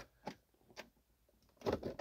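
A quiet pause holding a few soft, short clicks within the first second, then a man's voice beginning again near the end.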